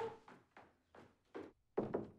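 Footsteps climbing wooden stairs, a few separate steps about half a second apart, followed near the end by a louder knock from a bedroom door.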